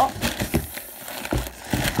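Irregular knocks and rustling of packaging as items are handled and lifted out of a cardboard delivery box.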